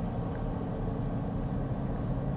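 Steady low hum of a Toyota car's engine and tyres heard from inside the cabin as the car rolls along.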